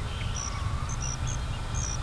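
Insects chirping in short, high, evenly repeated pulses, about two to three a second, over a steady low rumble of marsh ambience.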